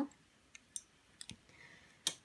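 Dip pens, one of them glass, set down in a wooden desk drawer: a few faint, light clicks, followed by a soft rustle.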